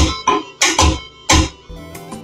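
Playback of a home-made rumba arrangement from software instrument plugins: a virtual guitar plays about five short, sharp strummed chords, with no bass under them. The chords die away near the end.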